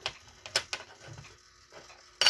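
Small gear motor of a 1965 Penetray color wheel running noisily, with a few sharp ticking clicks, the loudest about half a second in.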